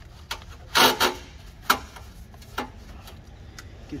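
Handling noise of a Kevlar and fibreglass turbo blanket being worked down over a turbocharger: a handful of short scrapes and knocks, the loudest just under a second in.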